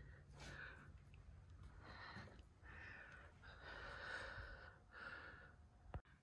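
Near silence, with a few soft breaths close to the microphone.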